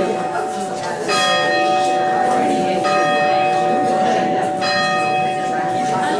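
Church bell tolling: three strikes a little under two seconds apart, each ringing on into the next, with people talking underneath.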